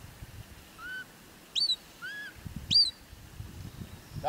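A shepherd's whistle giving commands to a herding sheepdog: three soft arched notes, then two loud, sharp upward-sweeping blasts about a second apart.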